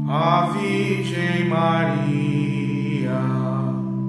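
A liturgical antiphon chanted in Portuguese by a voice that enters at the start, in short phrases, over steady sustained accompaniment chords.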